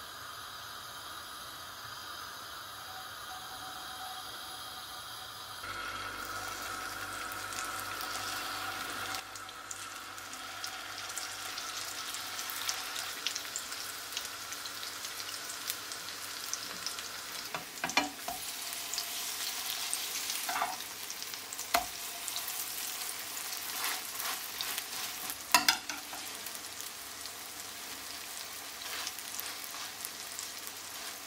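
Eggplant patties frying in shallow vegetable oil in a nonstick pan: a steady sizzle with crackling. In the second half a few sharp pops stand out.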